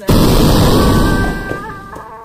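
Explosion sound effect: a sudden loud blast just after the start, dying away over about a second and a half, with a steady high tone coming in under its tail.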